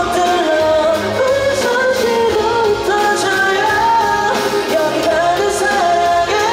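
Pop-rock band song with singing over electric guitar and band accompaniment.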